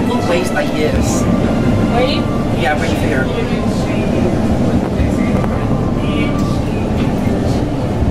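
REM light-metro train running along its track, heard from inside the car as a steady low rumble, with passengers' voices talking indistinctly over it.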